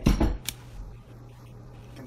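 Handling knocks from a rinsed Vitamix blender container being carried from the sink: a thump at the start and a sharp click about half a second in, then only a low steady hum.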